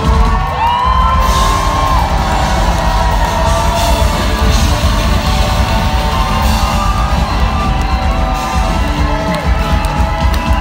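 Large live folk-rock band with fiddles, accordion and acoustic guitars playing a loud, fast song over drums, with the crowd whooping and yelling over the music.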